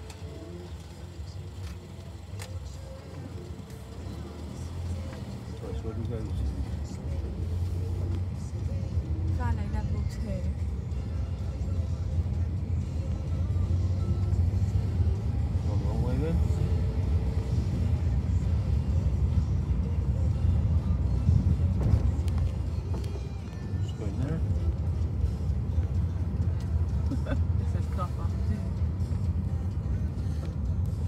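Low rumble of a car's engine and tyres heard from inside the cabin, swelling a few seconds in as the car pulls away from the barrier and rolls slowly through the car park. Faint voices and music sit under it.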